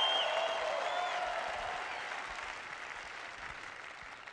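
Theatre audience applauding, loudest at first and dying away gradually.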